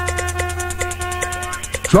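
Electronic dance music from a DJ set: rapid, evenly spaced hi-hats over a deep bass note and a held note. The bass and held note drop out about three-quarters of the way through.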